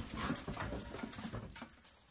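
Inline skate wheels rolling and scraping on concrete as a skater comes out of a slide, with a scatter of small clicks. The sound fades away to silence near the end.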